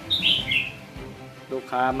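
A small bird chirping twice, short high-pitched chirps in the first half second, over faint background music; a man's voice starts near the end.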